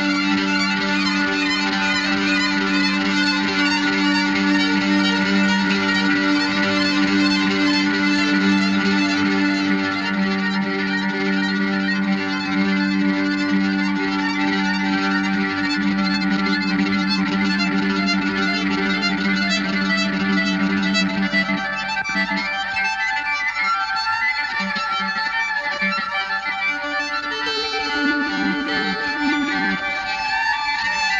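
Rock band playing live, led by violin, over a held low drone. About two-thirds of the way through the drone stops and the music turns busier and more broken.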